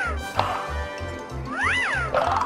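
Background music with a steady beat, overlaid with comic editing sound effects: a quick rising-and-falling whistle-like glide at the start and again near the end, and one sharp whack about half a second in.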